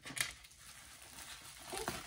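Quiet handling noise at a table: a short tap about a quarter second in, then faint light rustling and soft ticks of cards and packaging being handled.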